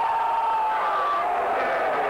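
Football stadium crowd cheering steadily just after a goal.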